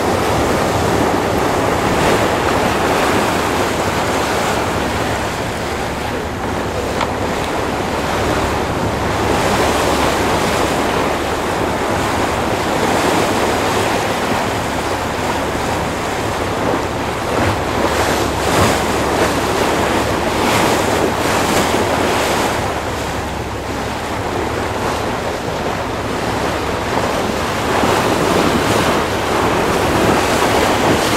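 Wind on the microphone over the rush of choppy sea waves from the deck of a moving boat, a loud steady noise with stronger gusts about two-thirds of the way through.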